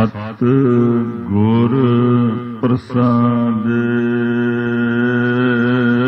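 A man's voice chanting the opening of a Sikh Gurbani hymn in a slow, drawn-out melodic line: a few gliding phrases with a short break, then one long held note from about three and a half seconds in.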